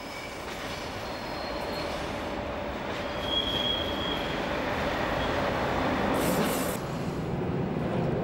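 DB class 103 electric locomotive and its passenger train rolling past, the rumble of wheels on rails slowly growing louder. A brief high wheel squeal comes about three seconds in, and a short hiss comes about six seconds in.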